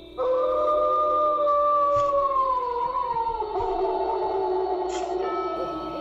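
One long howl, played as a Sasquatch call sound effect, that starts just after the beginning and slides slowly down in pitch before trailing off near the end, over a steady music drone.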